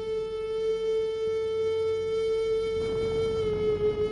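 Background music: one long held note on a flute-like wind instrument, steady in pitch.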